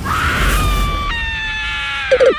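A long, high-pitched scream that slides slightly downward and drops in pitch about a second in, over a burst of rushing noise with a low rumble underneath.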